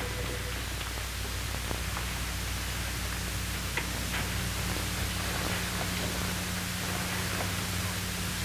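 Steady hiss with a low hum from an old television broadcast recording, with the last held notes of a music cue dying away about half a second in. A few faint clicks sit under the hiss.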